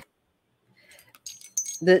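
Faint light jingling and clicking for about a second as a tarot card is picked up and held up. A spoken word starts near the end.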